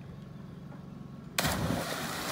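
A steady low hum, then about one and a half seconds in a person plunges into a swimming pool from a height with a loud splash of water lasting about a second.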